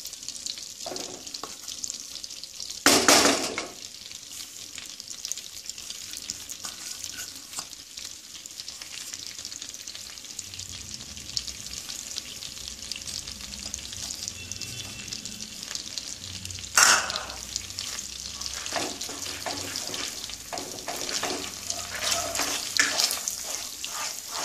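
Moong dal paste frying in melted butter in a kadai: a steady sizzling, crackling hiss. There are two short, loud noises about three seconds and seventeen seconds in, and a wooden spatula scrapes and stirs the paste more often toward the end.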